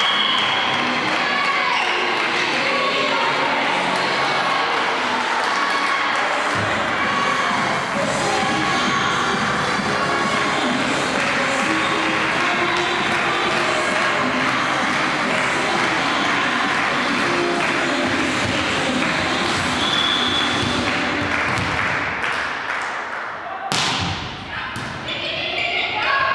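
Music playing over voices in a large hall, with low bass coming in about six seconds in. Near the end a single sharp smack of a volleyball being hit.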